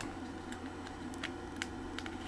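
Faint, irregular light clicks of fingers handling a circuit board and wiggling a desoldered resistor loose, over a steady low hum.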